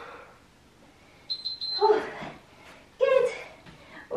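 A short, high electronic beeping tone, then two short wordless vocal sounds from a woman catching her breath at the end of a hard workout.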